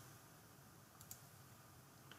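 Near silence: room tone with a couple of faint computer mouse clicks about a second in.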